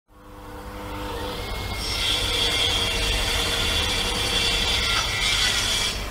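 A woodworking power tool running steadily, building up over the first two seconds, with a high steady whine from about two seconds in.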